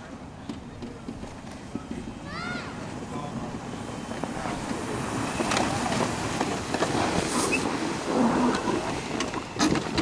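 A golf cart towing sleds over a snowy street comes closer and gets steadily louder, its running noise mixed with the sleds sliding over snow. Voices call out over it, with one short rising-and-falling shout early on.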